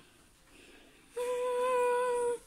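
A person humming one steady note for about a second, starting about a second in.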